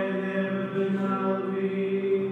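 Men's voices chanting together, holding long notes on a nearly steady pitch.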